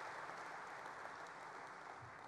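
Audience applauding, the clapping slowly tapering off near the end.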